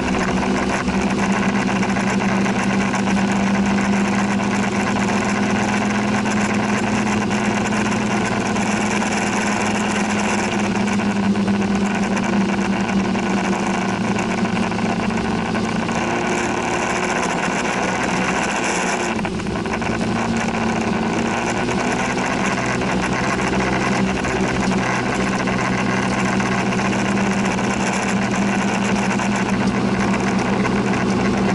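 Scooter's small engine running at a steady cruising speed, a constant hum with a brief dip about nineteen seconds in, over steady wind and road noise.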